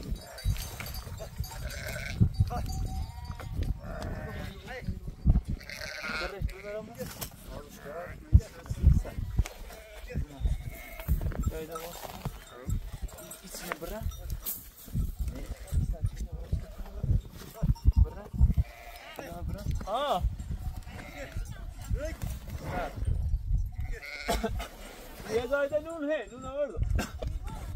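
Sheep and goats of a herd bleating, several separate wavering bleats over a low rumble and scattered knocks.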